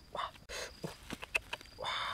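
Feathers being plucked by hand from a freshly killed bird: a series of short rustling tears about every half second, with a few sharp clicks.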